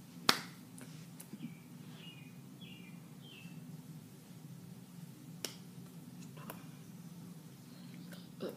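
Sharp smacks of hands striking while signing in sign language: a loud one just after the start, another about five seconds in, with softer ticks between. A few short, faint, high chirps come a couple of seconds in, over a steady low hum.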